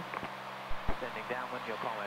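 Steady low engine and propeller drone of a light single-engine aircraft in cruise, heard thinly through the headset intercom, with a couple of soft low thumps and a faint murmur of voice.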